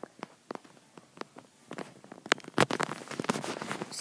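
Handling noise from a handheld camera being moved: scattered clicks and knocks, sparse at first, then denser and louder over the last two seconds.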